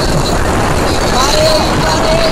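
Busy street noise: road traffic with people's voices, loud and dense throughout.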